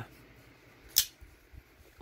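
A single sharp click about a second in as the Zero Tolerance 0920 folding knife is handled, over a quiet room.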